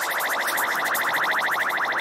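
Electronic dance track: a synthesizer tone pulsing in a rapid, even stutter, with no kick drum or bass underneath.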